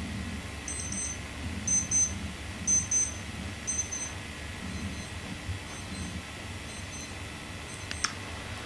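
A grandfather clock ticking, with a short high metallic ring on each tick about once a second. The ticks are clear for the first few seconds and then grow fainter.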